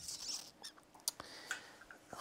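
A person moving about and picking up a garden shovel: faint rustling, then a few light knocks.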